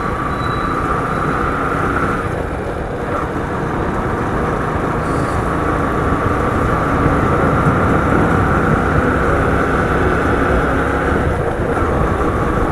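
Steady riding noise from a moving two-wheeler: its engine running at cruising speed with wind rushing over the microphone, and a steady higher whine that drops out briefly about two to three seconds in.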